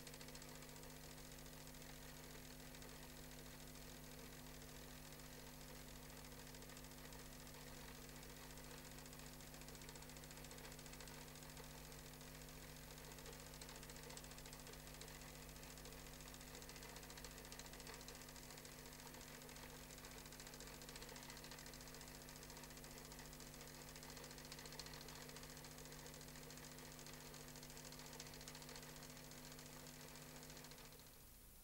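Near silence: a faint steady hum with hiss from the soundtrack's background noise, holding a few fixed tones without change.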